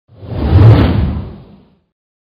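A whoosh sound effect with a deep low boom for an animated logo intro. It swells quickly, peaks under a second in, and fades away before the two seconds are out.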